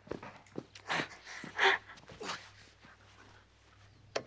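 Short breathy grunts and huffs of effort from people bouncing their seats along while tied back to back, three or four of them in the first two and a half seconds, with a couple of light knocks.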